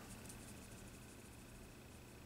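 Near silence: room tone, with a faint steady high-pitched whine.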